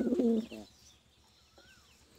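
Domestic pigeon cooing: a low, wavering coo that breaks off about half a second in. Faint, higher chirps of other birds follow.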